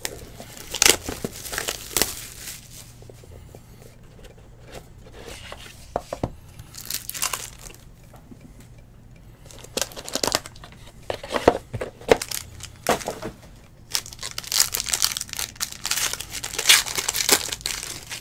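Plastic shrink-wrap being torn and crinkled off a sealed trading-card box, then the box and its contents handled. The crackling comes in several bursts, with a quieter stretch of handling in the middle.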